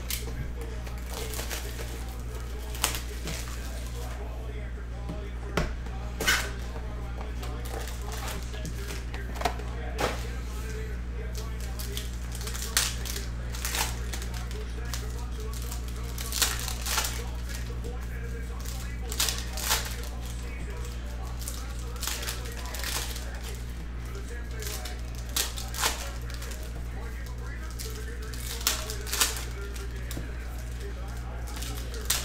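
Foil trading-card packs being torn open and handled by hand: a scattered series of short crinkling tears and rustles, with cards shuffled, over a steady low hum.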